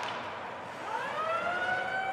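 Arena goal siren sounding to signal a home goal: starting just under a second in, its pitch rises and then holds steady.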